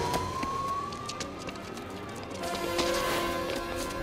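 A police siren wailing in one slow rise and fall, under an orchestral film score.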